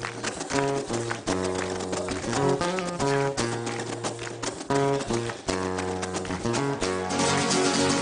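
Several nylon-string acoustic guitars playing an instrumental passage of a rumba flamenca song: driving rhythmic strumming with a lead guitar picking out the melody.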